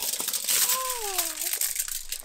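Aluminium foil crinkling and crackling as a taco is wrapped up in it and handled. A brief falling voice-like tone sounds over the crinkling about halfway through.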